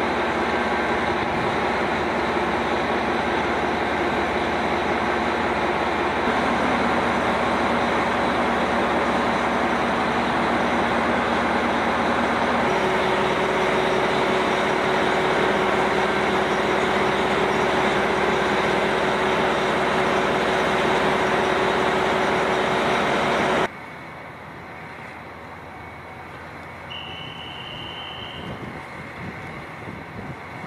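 Diesel engines of a JR Hokkaido KiHa 261 limited express railcar idling at a covered platform: a loud steady hum with a few steady tones that shift partway through. About 24 seconds in, it cuts off suddenly to a much quieter background, with a brief high tone near the end.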